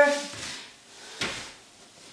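A single short knock about a second in, made while exercise tools are being handled and moved about on a floor mat.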